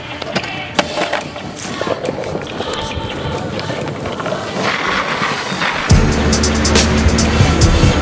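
Longboard wheels rolling over paving, a steady rumbling hiss with sharp clicks. About six seconds in, loud music with a heavy bass beat comes in suddenly.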